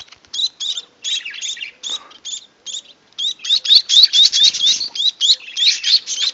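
Fledgling finches at their nest giving begging calls: a rapid stream of short, high chirps, many with a rising note. The calls grow faster and louder about three seconds in.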